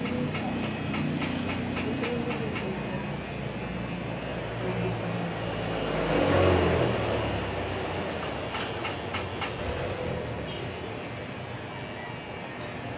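Barber's scissors snipping hair in short sharp clicks, in a run during the first couple of seconds and again about nine seconds in, over a steady low rumble that swells about six seconds in.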